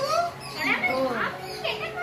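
Lively chatter of several voices, children's among them, talking and calling over one another.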